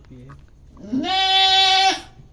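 A goat doe in labour gives one long, loud bleat, about a second long and steady in pitch, as her kid is being delivered.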